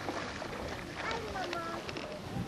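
High-pitched voices, like children calling out at play, over a steady background of wind and water noise.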